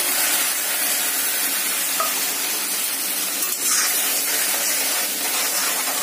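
Wet ground masala paste of mustard seed, coriander, chilli and garlic sizzling steadily as it hits hot oil in a heavy iron kadhai, and being stirred with a metal slotted spoon.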